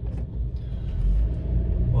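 A low, steady rumble of background noise, growing a little louder toward the end.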